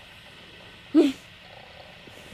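A sleeping toddler makes one brief grunt about a second in, loud and sudden over a faint steady hiss.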